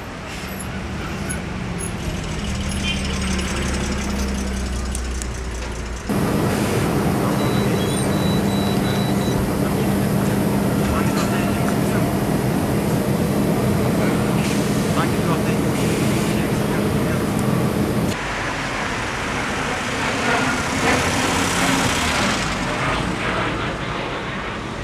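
City buses running and idling in street traffic, with the voices of people around them. The sound jumps abruptly twice, about six seconds in and again near eighteen seconds, and is loudest in the middle stretch, where a steady low engine hum stands out.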